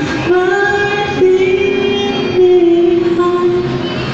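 Karaoke singing: a young singer with a high voice sings into a microphone, amplified through the booth's loudspeaker, holding one long note and then a second, slightly lower long note.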